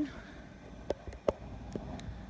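Handling noise as a phone camera is picked up and turned: a few sharp clicks and knocks, the loudest just past halfway, over a low steady rumble.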